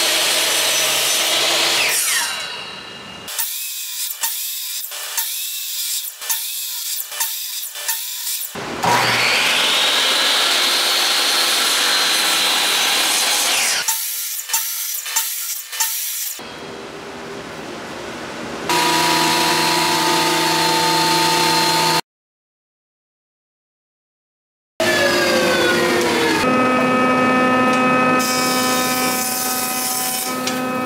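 Craftsman sliding miter saw spinning up and cutting through pallet-wood boards, twice: at the start and again about nine seconds in, its whine rising and then holding through the cut, with rows of sharp clicks and knocks as the wood is handled between cuts. In the second half a jointer's motor runs with a steady hum, cut off abruptly by a few seconds of dead silence.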